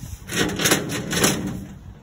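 Clattering, scraping handling noise in a sheet-metal filing cabinet, with four or so sharp clicks in about a second, loudest in the middle.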